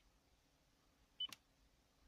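A Lexus navigation touchscreen gives one short, high confirmation beep about a second in as its zoom-out button is pressed. A sharp click follows right after.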